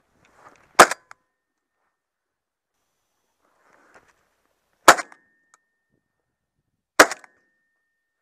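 Three shotgun shots, the second about four seconds after the first and the third about two seconds after that, each a single sharp report followed a moment later by a fainter knock. Faint rustling comes before the first two shots.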